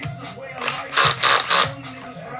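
A cordless drill with a round scrub-brush attachment spun briefly in three short, loud bursts about a second in. Hip hop music plays underneath.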